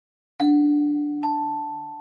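Music-box-style lullaby starting up after silence: a bell-like note is struck and rings out slowly, then a second, higher note joins under a second later.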